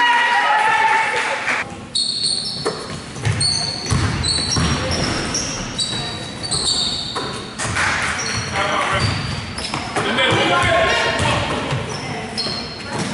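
Basketball game sounds on a hardwood court: sneakers squeaking in short, high chirps, mostly in the middle stretch, the ball bouncing with low thuds, and players and spectators shouting at the start and again near the end.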